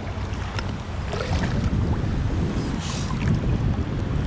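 Wind rumbling on the microphone over water sloshing in the shallows. A few faint knocks come through, and there is a brief splashy hiss a little before three seconds in, likely a sand scoop being worked and drained.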